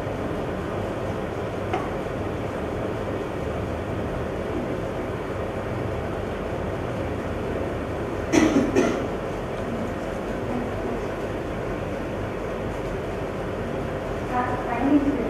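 Steady background room noise, an even rumble without speech, broken about eight seconds in by a brief cluster of a few quick knocks.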